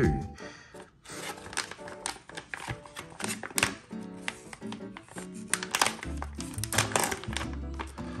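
Foil booster-pack wrapper crinkling and rustling as it is torn open by hand, over background music.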